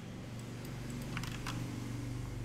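A few faint, short computer clicks over a steady low hum, as the browser's inspector is being opened.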